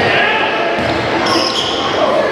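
A basketball dribbled on a hardwood court, a few low bounces, under the chatter of players and spectators in the gym.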